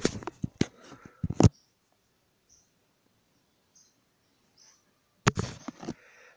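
A few sharp clicks and knocks in the first second and a half from a New Holland T6010 tractor's tilting steering column being released, swung and locked into place. The engine is off. Then a few faint high chirps, and a short clatter about five seconds in.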